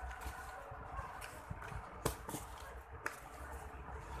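Sheets of paper rustling as they are handled and shuffled close to a lapel microphone, with a few short sharp snaps of the paper.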